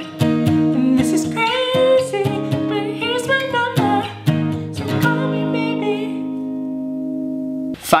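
Acoustic guitar, capoed at the fourth fret, strummed steadily through the chorus chords A, E, B and C-sharp minor, with a man singing along. The singing stops about five seconds in and the last chord rings on for nearly three seconds before cutting off suddenly just before the end.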